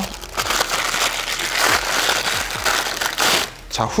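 Thin clear plastic wrapping crinkling as it is pulled off a cylindrical lens hood by hand. The crinkling stops about three and a half seconds in.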